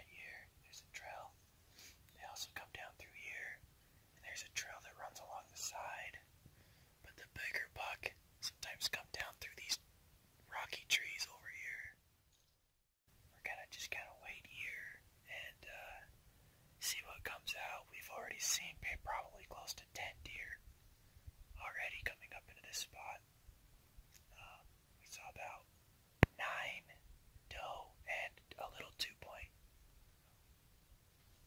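A man whispering in short phrases, with a brief gap about twelve seconds in. One sharp click sounds about 26 seconds in.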